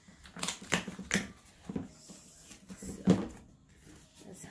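Cardboard shipping box being handled and opened by hand: an irregular run of short rustles, scrapes and knocks, with the loudest knock about three seconds in.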